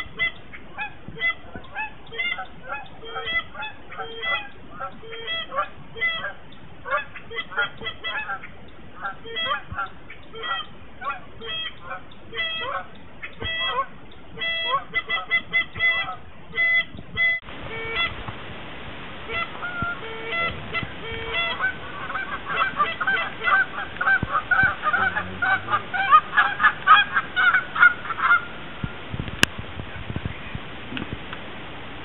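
A flock of geese honking, with many short calls overlapping. The calling grows thicker and louder in the last third.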